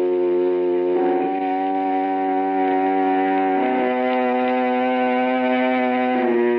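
Theatre organ music: sustained, held chords that shift to a new chord about a second in and again near four seconds in, closing the scene.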